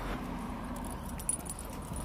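Light metallic jingling, as of keys on a walking police officer's duty belt, with a short cluster of small clicks a little over a second in, over a low steady background rumble.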